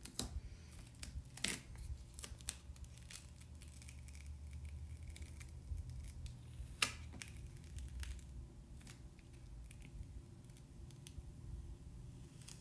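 Adhesive patterned vinyl being peeled off transfer tape by hand, faint crinkling and crackling with a few sharper snaps, the loudest about seven seconds in.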